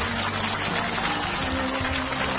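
Studio audience applauding over sentimental background music with held tones.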